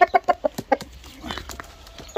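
Fighting rooster clucking: a rapid run of short clucks in the first second, then a few more about a second and a half in.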